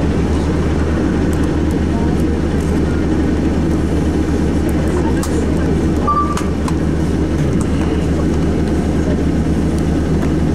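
Bus engine idling steadily, heard from inside the bus, as a continuous low drone. A faint short beep comes about six seconds in.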